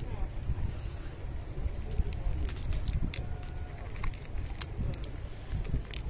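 Wind buffeting the microphone with a steady low rumble, over a cat crunching dry kibble close by in short, crisp clicks that come more often in the second half.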